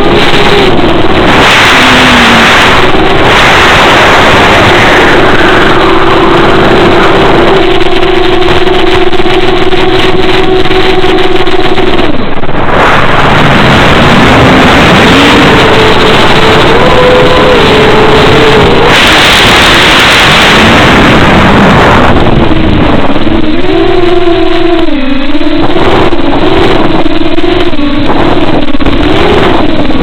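Electric motor and propeller of an FPV fixed-wing model plane, heard loud through the onboard microphone over rushing air: a buzzing whine whose pitch wanders up and down as the throttle changes. It holds steady for several seconds in the first half and drops out briefly near the middle.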